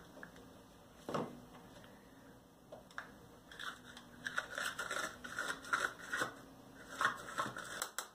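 Dry papery skin of a garlic bulb crackling as hands break it apart and peel the cloves, a run of quick crackles over the second half, with a single knock about a second in.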